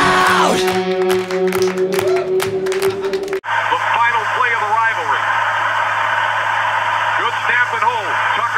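A rock song ends on a long held chord, then cuts off suddenly about three and a half seconds in. It gives way to the game broadcast's stadium crowd noise over a steady low hum, with scattered voices rising out of it.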